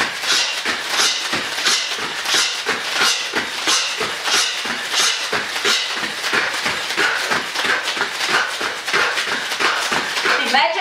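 Sharp hissed exhales in a quick, uneven run, about two or three a second, from two people breathing out with each fast shadowboxing punch.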